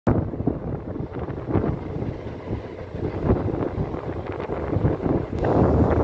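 Passenger train running at speed, heard from an open coach doorway: a continuous rush of wind buffeting the microphone over the rumble of the wheels on the track.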